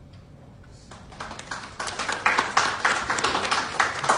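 A room of people applauding: quiet for about a second, then rapid, irregular hand claps that build and grow louder.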